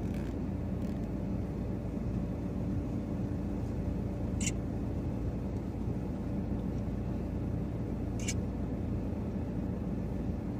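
A vehicle's engine running steadily, a low hum that does not change. Two brief, sharp high-pitched sounds come about four seconds apart, near the middle and toward the end.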